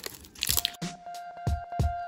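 Plastic wrapper strip crinkling and tearing as it is peeled off a plastic toy capsule. Just under a second in, background music with a steady drum beat starts suddenly and carries on.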